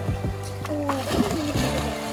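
A splash of water as a child jumps into a shallow stream, from about a second in, over background music and children's voices.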